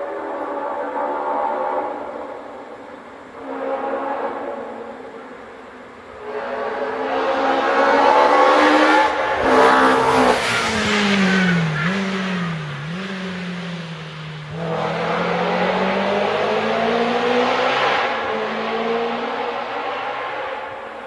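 Rally car engine at full throttle, rising in pitch through several gear changes and loudest about ten seconds in as it passes. It then drops in pitch with two quick blips on the downshifts before pulling away on the throttle again.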